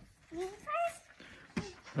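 Speech only: a child's voice making two short, high-pitched syllables that the transcript does not catch.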